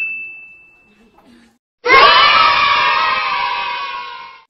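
A chime fading out, then about two seconds in a loud canned crowd-cheering sound effect that starts and stops abruptly, marking a correct answer in a quiz game.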